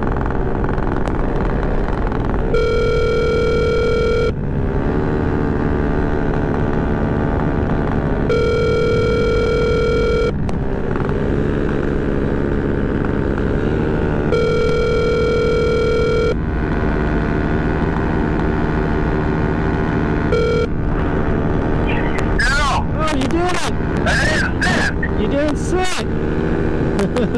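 Telephone ringback tone of an outgoing call: three identical two-second rings about six seconds apart, then one short beep about twenty seconds in, heard over the steady drone of the paramotor engine.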